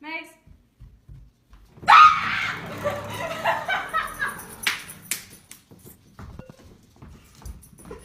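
A woman's loud scream of fright breaks out suddenly about two seconds in and goes on as shrieking cries for about three seconds before dying down. A short high squeak sounds at the very start.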